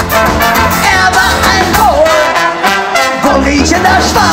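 Live ska band playing: trombone and trumpet over acoustic guitar and a drum kit, with a woman singing. The bass end drops out briefly just past the middle, then comes back in.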